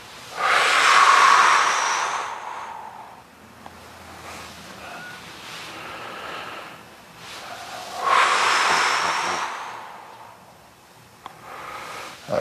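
A man's two long, heavy exhalations, about seven seconds apart, close to the microphone. They come as he lifts and swings a leg across in a lying scissor stretch.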